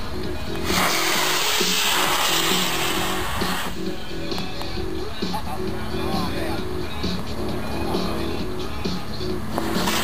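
Model rocket motor igniting and burning on launch: a loud, steady rushing hiss from under a second in that lasts about three seconds. Under it, background music with a repeating synth-bass pattern runs throughout.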